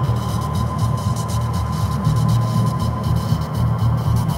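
Electronic drone music built from sculpted static and noise: a dense, steady low hum with a thin held tone above it and a flickering hiss of static on top.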